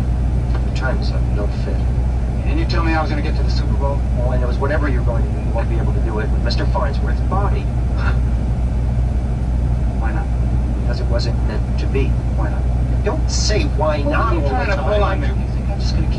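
Film dialogue playing from a small screen's speaker, with men's voices coming and going, over a steady low engine hum, typical of a semi truck idling.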